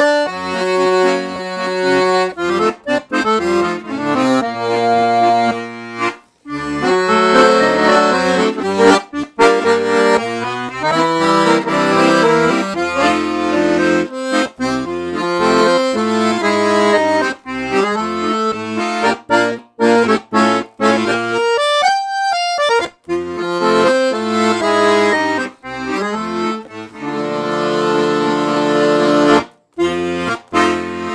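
A Programmer piano accordion with three sets of treble reeds and demi-swing musette tuning, played as a demonstration piece: a melody on the treble keys over a bass and chord accompaniment from the 120 bass buttons, with a couple of brief breaks between phrases.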